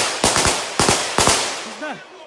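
Gunfire from assault rifles: about half a dozen sharp shots at uneven spacing, thinning out over the first second and a half. A man starts shouting near the end.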